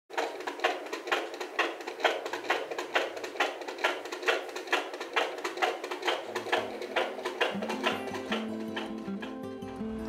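A baby's heartbeat picked up by a handheld fetal Doppler and heard through its speaker as a rhythmic whooshing pulse, about two beats a second, fading out near the end. Soft music comes in during the second half.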